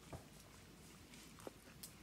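Near silence, with a few faint soft clicks of someone chewing a popcorn-and-marshmallow treat.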